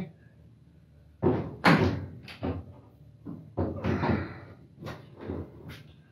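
A string of short knocks and clunks of things being handled, mixed with brief bits of voice.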